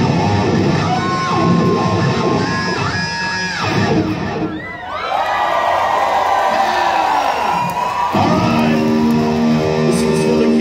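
Electric guitar solo played live at loud volume: held high notes with bends, a run of notes sliding down and back up about halfway through, a long sustained note, and near the end a steady ringing chord.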